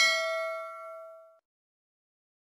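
Notification-bell 'ding' sound effect of a YouTube subscribe-button animation: one bright chime with several ringing tones that fades out about a second and a half in.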